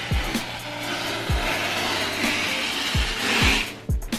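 Packing tape on a cardboard shipping box being slit open with a small blade: a continuous rasping scrape that grows loudest about three seconds in. Background music with a beat plays underneath.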